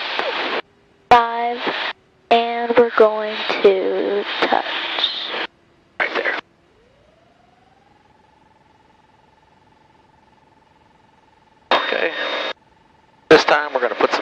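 Voices over an aircraft headset intercom, cutting in and out abruptly as the voice-activated squelch opens and closes. In the quiet gap, a faint engine tone rises in pitch and then holds steady as power comes up for the touch-and-go takeoff.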